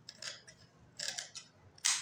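Large steel tailoring scissors snipping through cloth: short crisp cuts about a quarter second in, again at about one second, and the loudest one near the end.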